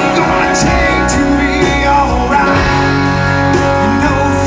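A rock band playing live through a PA: acoustic and electric guitars, bass and drums with cymbal hits, with a voice singing.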